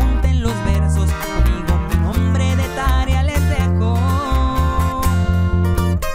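Instrumental break of a corrido tumbado: a lead guitar plays runs with slides over accompanying guitar and steady held bass notes.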